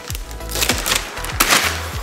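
Gift wrapping paper being torn off a large cardboard box in quick rips, over background music.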